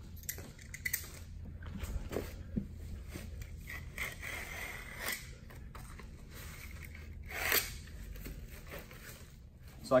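A roll of ice and water shield membrane being unrolled and cut with a utility knife: scattered scrapes, rustles and light knocks, with one louder ripping stroke about seven and a half seconds in.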